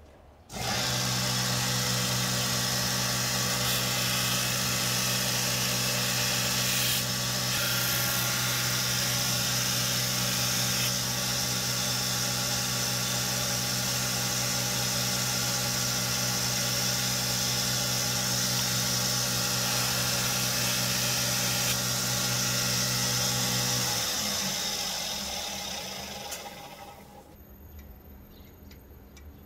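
Electric belt grinder switched on: its motor starts abruptly and runs steadily with a hum and the hiss of the abrasive belt. It is switched off about 24 seconds in and winds down over a few seconds.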